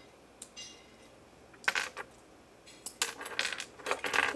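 Small hard plastic Lego pieces clicking and clattering as they are handled: a few light clicks, a loud clatter about two seconds in, then denser rattling over the last second.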